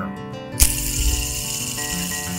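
A whooshing, whirring sound effect for a giant spinning fidget spinner starts suddenly about half a second in and carries on as a steady rush with a deep rumble underneath, over background acoustic guitar music.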